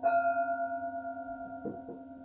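A hand-hammered Tibetan singing bowl is struck at the start and rings with several clear overtones, fading slowly with a wavering beat. It sounds over the steady hum of other bowls still ringing. Two soft knocks come near the end.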